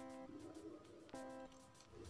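Faint background music: two plucked guitar chords about a second apart, each ringing briefly and dying away.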